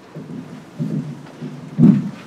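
Handling noise from a microphone being gripped and repositioned on its stand: several low rumbling bumps, with a loud thump near the end.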